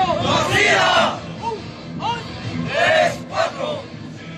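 A group of military recruits shouting in unison during a rifle drill. One loud shout comes in the first second and another about three seconds in, with shorter calls between.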